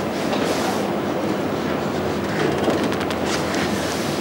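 Steady, even rushing noise with no voice over it.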